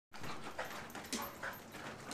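Two dogs play-wrestling: short, irregular dog sounds and scuffling, with a sharp knock just over a second in.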